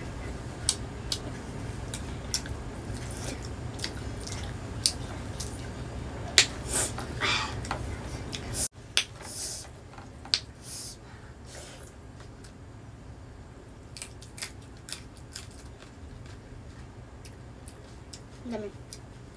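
Close-up eating sounds of mustard greens and pork: chewing and lip smacks with many short sharp clicks, busier in the first half. There is a sudden brief dropout just before halfway, after which the sounds are quieter and sparser.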